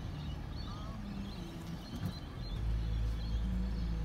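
Low rumble of a car heard from inside the cabin, growing stronger a little past halfway, with faint bird chirps in the background.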